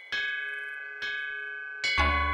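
Bell-like chimes struck three times, about a second apart, each note ringing on and slowly fading.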